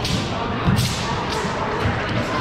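Several thuds of a martial artist's feet stamping and landing on a hardwood gym floor during a kung fu routine, the loudest a little before the middle.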